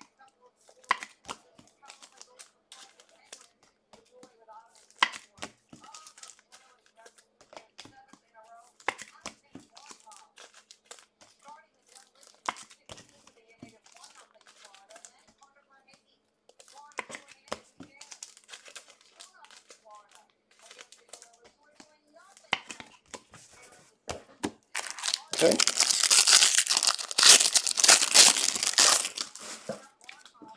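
Trading cards handled and shuffled, with scattered sharp clicks, then a foil card-pack wrapper torn open and crinkled loudly for the last five seconds or so.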